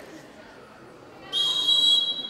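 A handball referee's whistle blown in one long, loud, steady blast, starting past halfway.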